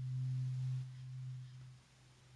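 A low steady hum, strongest in the first second and fading away toward the end.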